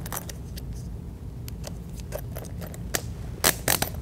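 A plastic security bag being handled and sealed by hand: scattered crackles and small clicks, with a few louder scraping rasps near the end, over a steady low hum.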